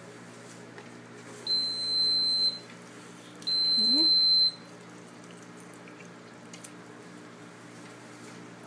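An electronic beeper sounds two long, high, steady beeps, each about a second, about two seconds apart, over a low steady hum.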